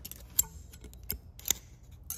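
A few light metallic clicks as a steel feeler gauge blade is worked between a cam lobe and valve bucket to check valve clearance on a Suzuki RM-Z450 cylinder head. The first click, a little under half a second in, is the loudest.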